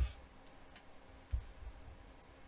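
Handling noise at a desk: a couple of faint clicks, then a short low thump about two-thirds of the way through.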